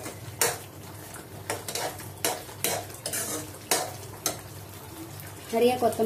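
A spatula stirring and scraping thick tamarind vegetable gravy (kootu) in a metal kadai on the stove, in about ten uneven strokes.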